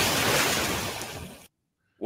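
Layered horror sound effect from a film sound-design clip: a loud rushing noise that fades over about a second and a half and then cuts off suddenly.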